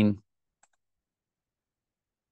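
A single faint computer mouse click, followed by near silence.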